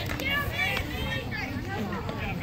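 Several people's voices chattering at once, none of them clear words.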